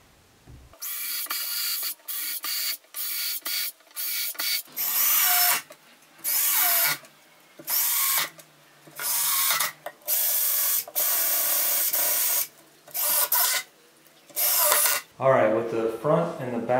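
Ryobi cordless drill driving screws into MDF in about fifteen short trigger bursts, the motor whining with each pull and stopping between screws.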